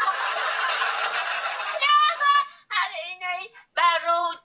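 A woman laughing, a breathy, unpitched laugh for nearly two seconds, then talking in short bursts.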